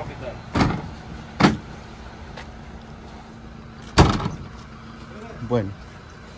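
Ambulance rear doors being shut: three thuds, about half a second in, about a second and a half in, and the loudest at about four seconds, over a steady low hum.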